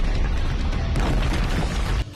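Anime battle sound effect: a heavy, rumbling boom over dramatic soundtrack music, cutting off suddenly at the end.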